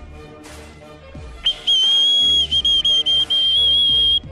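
A shrill whistle blown in one long, steady blast, starting about one and a half seconds in and broken by a few brief gaps.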